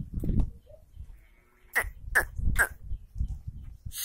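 A herd of goats on the move, with a low rumble of movement at the start. Then three short, sharp, downward-sweeping calls come about half a second apart near the middle.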